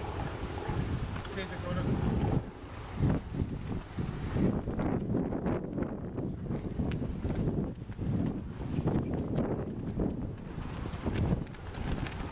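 Wind buffeting the camera microphone in uneven gusts, a low rumble that swells and drops throughout.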